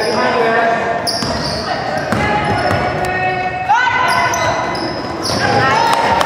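Basketball bouncing on a gym's hardwood floor, with short sneaker squeaks and shouting voices from players and spectators, echoing in the gymnasium. A shout rises in pitch about two-thirds of the way in.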